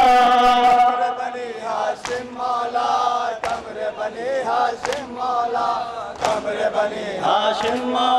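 Noha, a Muharram lament, sung by a male reciter through a microphone and PA, answered by a crowd of men chanting. Sharp strikes of chest-beating (matam) land about every second and a half.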